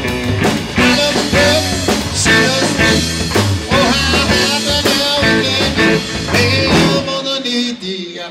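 Live rock and roll band playing an upbeat 1950s-style number on electric guitar, bass guitar and drums. Near the end the bass drops out briefly.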